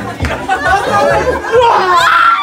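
Several people talking and calling out at once over dance music with a steady bass beat.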